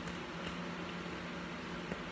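An electric fan running steadily in a small room: a low, even hum with a constant hiss, and a couple of faint clicks.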